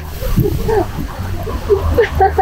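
A woman's voice making short wordless sounds, twice, over a steady low rumble.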